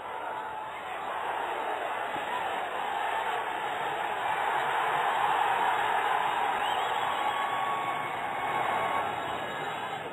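Stadium crowd roaring as a Bangladesh attack reaches the goalmouth, swelling to a peak about halfway through and easing off near the end.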